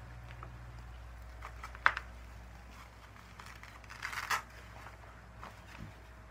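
Handling noise of a waist training belt being wrapped around the waist: soft rustles and small clicks, one sharp click about two seconds in and a short scratchy burst around four seconds.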